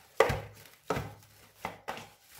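Soft yeast dough being kneaded by hand in a stainless steel bowl: three slaps of the dough pressed against the metal, about two-thirds of a second apart, the first the loudest.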